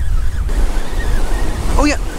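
Ocean surf breaking and washing up a sandy beach, with wind rumbling on the microphone.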